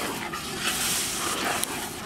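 Beaten egg and chopped vegetables sizzling in a large frying pan, a steady hiss with a few short sharp clicks and a brief sound of another kind over it.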